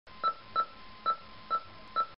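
Five short electronic beeps at an uneven pace, all on the same pitch, over a faint steady tone.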